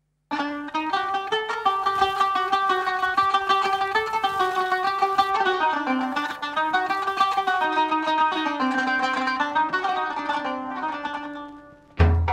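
Bouzouki playing a fast run of plucked notes as the instrumental opening of an old Greek laiko record, starting a moment in and easing off near the end.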